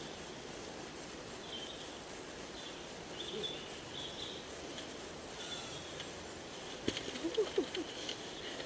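Faint woodland background with short, high bird chirps coming and going, then a quick run of footfalls and scuffs on the leafy trail near the end as a runner comes down past close by.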